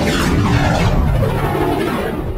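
Title-sequence sound effect: a sudden loud cinematic whoosh over a deep rumble, with a sweep falling in pitch, slowly dying away.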